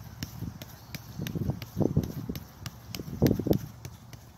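Soccer ball tapped back and forth between the insides of both feet on artificial turf: quick light taps, about three a second. Two louder low, muffled swells come about a second and a half in and again near the end.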